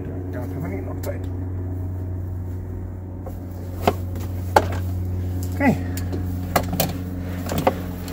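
Scattered sharp clicks and taps of hand tools and metal parts in a car's engine bay as a bolt is worked on, over a steady low hum. The clicks come singly, starting about halfway through.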